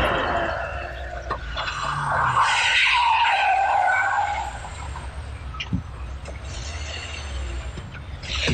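Car tyres squealing as a car makes a sharp U-turn into a curb parking space. The squeal wavers in pitch and lasts about two seconds, a couple of seconds in.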